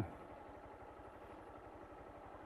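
Faint, steady engine running.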